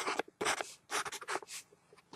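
Marker pen scratching on a paper map in a quick run of short, irregular strokes with brief gaps between them.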